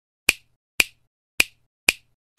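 Four sharp finger snaps, evenly spaced about half a second apart, used as an intro sound effect.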